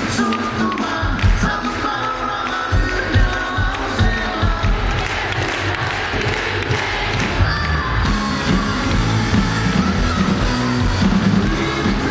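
Live concert music with a singing voice over a steady low beat, amplified and heard from among the audience.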